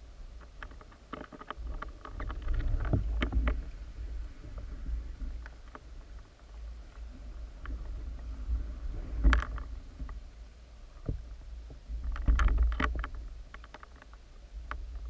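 Underwater sound picked up by a submerged camera: a steady low water rumble, with clusters of sharp clicks and knocks about two to three seconds in, around nine seconds and again near the end.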